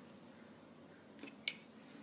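A soft tick and then a single sharp click about a second and a half in: a wooden coloured pencil being picked up and knocking against the one already in hand.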